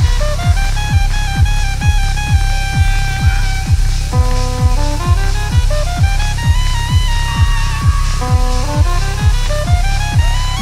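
Techno-jazz big band playing live: a steady four-on-the-floor kick drum at about two beats a second under horn and synth lines that move in stepped phrases.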